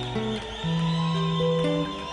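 Live reggae band playing an instrumental passage: an acoustic guitar is picked over a bass line of long held notes, with sustained higher tones above.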